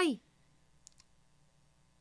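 A voice finishes its last word, then near silence broken by two faint clicks close together about a second in.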